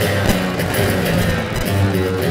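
Acoustic guitar strummed steadily in an instrumental stretch of a live solo song, with no voice over it.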